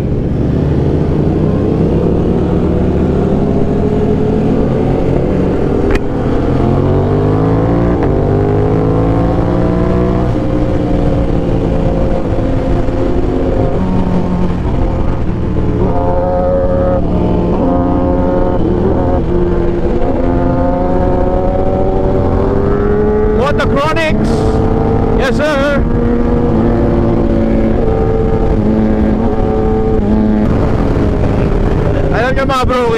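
Aprilia RS660's 659 cc parallel-twin engine running at speed, its pitch climbing as it accelerates and dropping back between pulls, several times over.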